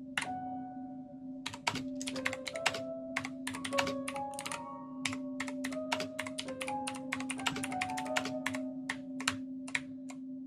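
Rapid typing on a backlit computer keyboard, each keystroke clicking and setting off a short synth note in Ableton Live, so that a changing string of pitched tones plays over a steady low drone. The typing is sparse for the first second and a half, then runs at several keystrokes a second.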